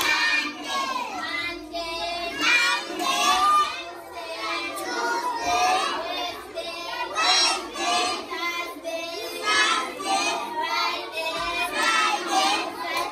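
A group of young schoolchildren singing together.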